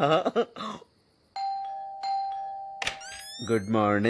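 Two-tone ding-dong doorbell chime: a higher note, then a lower one about half a second later, both ringing on and fading together for about a second and a half. It ends with a sharp click and a run of quick rising chirps.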